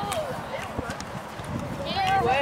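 Teenage girls' voices talking and calling out, high-pitched, briefly near the start and rising again near the end, over an uneven low rumble.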